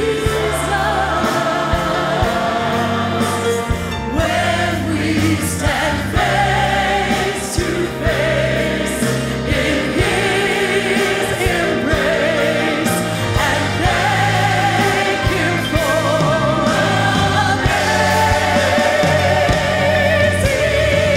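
Gospel choir singing with a woman soloist whose voice carries a wide vibrato, over instrumental accompaniment.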